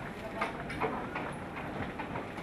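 A few light, sharp clicks and knocks over low murmuring voices.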